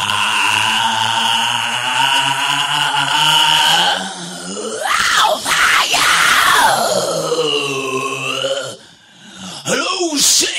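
Opening of an industrial electronic track: a loud, low droning tone with many overtones, held steady for about four seconds, then bending in sweeping glides up and down before dropping away near the end.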